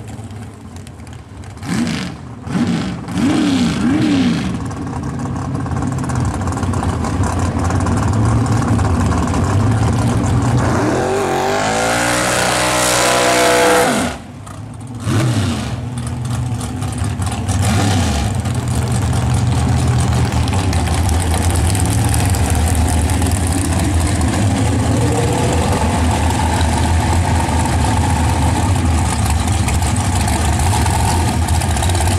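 Drag racing engines. Short throttle blips come first. A few seconds later an engine revs up in one long climb in pitch and cuts off sharply. After a couple more revs, a supercharged V8 dragster engine settles into a steady, lumpy idle.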